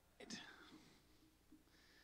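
Near silence: faint room tone, with a brief, faint voice sound about a quarter second in.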